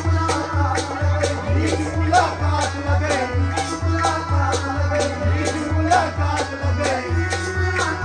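Harmonium playing held notes under a man's singing voice, over a steady percussion beat: deep thuds about twice a second with sharp rattling clicks between them.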